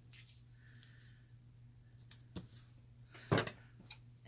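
Light handling of fabric and an index card on a wooden tabletop: a few faint taps, then one sharper knock about three seconds in, over a low steady hum.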